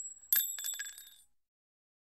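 Bell sound effect: a high metallic ding rings out, then a quick run of several more strikes about a third of a second in, ringing and dying away after about a second.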